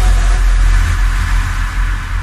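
A deep, sustained electronic bass tone from a DJ remix, with a hissing noise wash above it, slowly fading after the song's singing has stopped.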